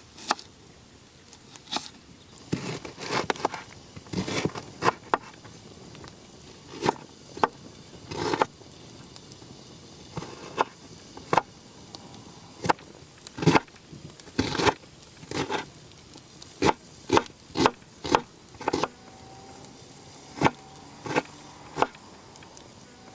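Kitchen knife slicing a raw onion on a wooden cutting board: irregular crisp cuts and knocks of the blade on the board, some single and some in quick runs.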